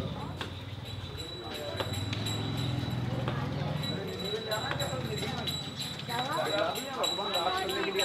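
Busy lane ambience: a low engine hum in the first half with a few sharp knocks on paving, then people talking nearby from about halfway on.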